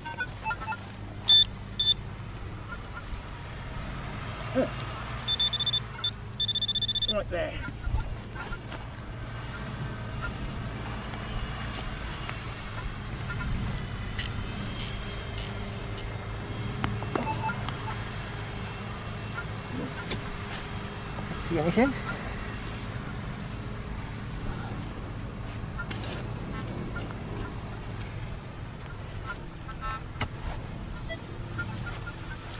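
Metal detector sounding high pitched target tones over a buried coin: short beeps, then a longer steady tone about six seconds in. Then come the scattered scrapes and knocks of a spade digging into dry field soil, over a steady low hum.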